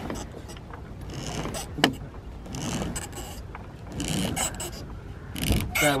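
Gaff rig throat halyard being hauled by hand through its blocks: about four pulls of rope rubbing through the sheaves, each about half a second long and spaced more than a second apart, with a sharp knock about two seconds in.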